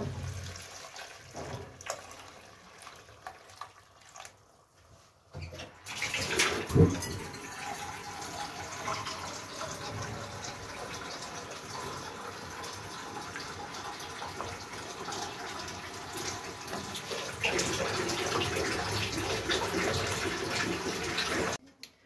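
Hot water poured from a small saucepan into a pot of fried chicken and tomato soup base, then a steady watery noise while the soup is stirred with a wooden spoon. There is a single thump about seven seconds in.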